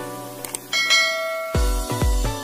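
Two quick clicks and then a bell chime sound effect ringing and fading over background music. About one and a half seconds in, the music picks up a heavy steady beat.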